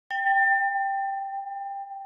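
A single bell-like chime struck once just after the start, one clear tone ringing on and slowly fading, the higher overtones dying away first: the sound logo accompanying a news channel's intro animation.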